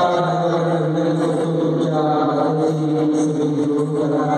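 Devotional chanting with musical accompaniment: voices hold long notes on a steady pitch, with a short break about halfway through.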